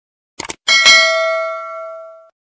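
Subscribe-animation sound effect: a quick double mouse click, then a bright bell chime that rings and fades over about a second and a half.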